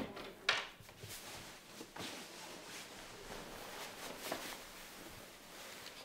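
Two sharp knocks in quick succession, the second the louder, followed by soft rustling and handling noise with a few faint clicks.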